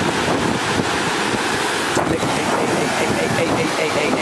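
Steady rush of a fast-flowing river, with wind buffeting the microphone. A single sharp click about halfway through.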